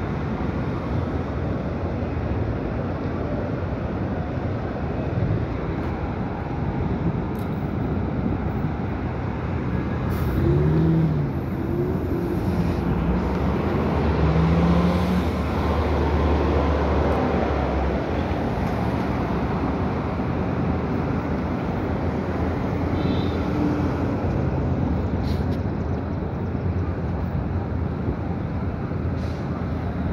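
City street traffic: a steady wash of passing vehicles, swelling louder with a deeper rumble for a few seconds around the middle.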